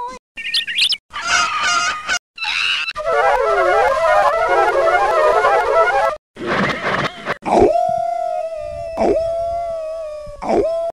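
Garbled playback of a damaged VHS tape: a rapid string of short music and sound-effect snippets, each cut off abruptly by a brief dropout. A busy run of notes lasts about three seconds, and near the end a single high tone is held for a few seconds, broken by a click.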